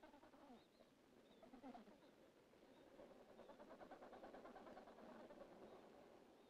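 Faint calls of Adélie penguins: a few low, gliding squawks, then a quick rattling bray from about three seconds in.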